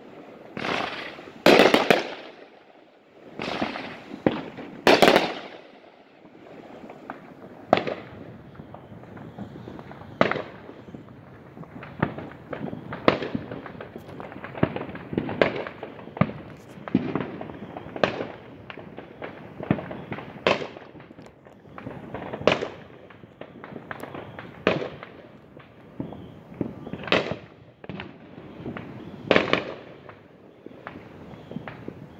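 Fireworks exploding: a few loud bangs in the first five seconds, then a steady run of fainter, sharper reports every second or two.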